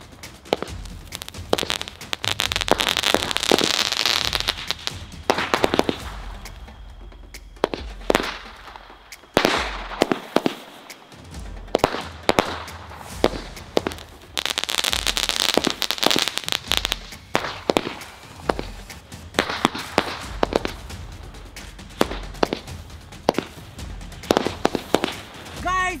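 A 50-shot sky-shot firework cake firing: a rapid, irregular string of sharp bangs as shells go up and burst. Two longer stretches of hissing come early on and again about midway, where the launch tubes spray sparks.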